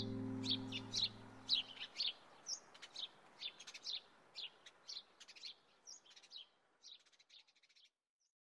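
The song's last chord dies away over about two seconds, with small birds chirping over it. The chirps come in short, high calls several times a second, thinning out and stopping shortly before the end.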